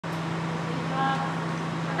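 Steady low hum over a background of ambient noise.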